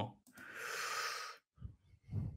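A man's long, audible breath out into a close microphone, lasting about a second, with a short faint low sound near the end.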